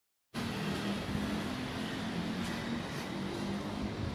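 Outdoor street noise with a steady low rumble, cutting in suddenly about a third of a second in after silence.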